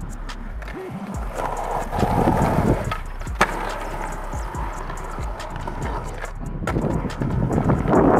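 Skateboard dropping in on a concrete ramp and rolling across the concrete, its wheels rumbling loudest a second and a half to three seconds in, with one sharp clack of the board about three and a half seconds in.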